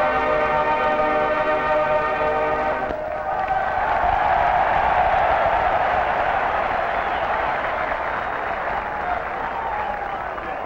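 A marching band holds a final sustained brass chord, which cuts off about three seconds in. A large stadium crowd then applauds, the applause slowly dying down.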